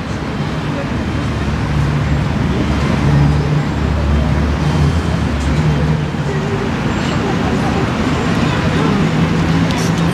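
Steady road-traffic noise with a low vehicle rumble that swells in the first half and then eases off.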